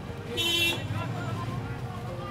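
A short vehicle horn toot about half a second in, over steady street traffic noise.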